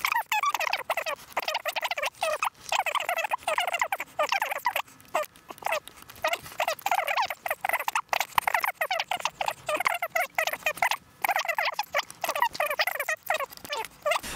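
Rapid, high-pitched chattering voice, like speech played back fast with the low end gone, mixed with light clicks of metal latch parts being fitted together.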